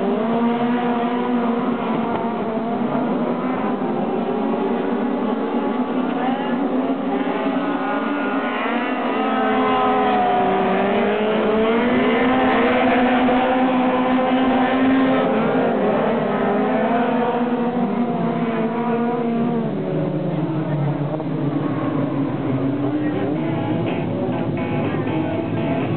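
Midget race cars' engines running hard on a dirt oval, several at once, their pitch rising and falling as they lap past.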